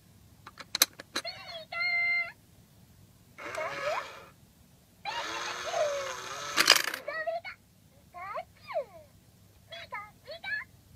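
Pikachu coin bank toy working: sharp clicks as a coin is set on its tray, then the toy's recorded Pikachu voice calling in short, high squeaky bursts. In the middle come two longer stretches of mechanism noise with voice over them and a loud clack as the paw snatches the coin, followed by more Pikachu calls.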